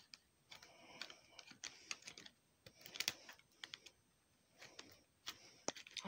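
Scissors cutting up a plastic benefits card: several faint bursts of snipping crunches and blade clicks, about a second apart.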